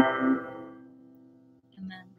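A woman's sung "hold on" ends over an accompanying chord. The chord then rings on and fades away over about a second and a half, leaving only a faint hum.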